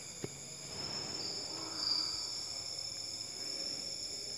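Quiet room noise with a steady high-pitched whine made of several constant tones, and a faint click about a quarter second in.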